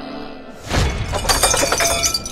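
A sudden loud crash of something shattering, like breaking glass, about two-thirds of a second in, followed by a dense scatter of sharp clinks and rattles. Soft music with held notes plays before the crash.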